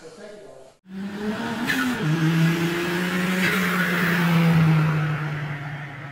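Outro sound effects: after a brief cut to silence, a steady low engine-like drone starts about a second in and steps down in pitch, with two whooshes over it, fading near the end.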